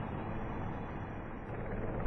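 Sikorsky S-64 Skycrane firefighting helicopter flying low: a steady din of rotor and turbine engine with a low hum underneath.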